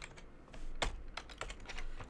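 Typing on a computer keyboard: a few separate keystrokes, irregularly spaced.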